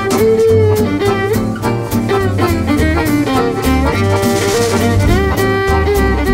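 Swing jazz instrumental: a violin plays the melody with pitch slides over an acoustic guitar strummed steadily on the beat and a double bass line. There is a brief cymbal wash about four seconds in.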